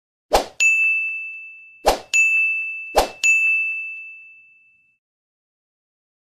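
Animated subscribe-button sound effects: three times, a brief pop is followed by a bright, bell-like notification ding that rings and fades away. The last ding dies out near the two-thirds mark.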